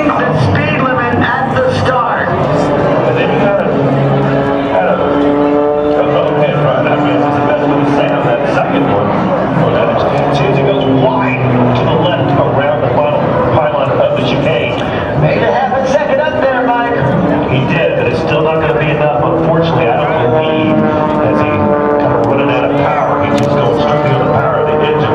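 Propeller race plane's piston engine running at high power, its pitch rising and falling as it passes and turns through the pylons, with indistinct voices mixed in.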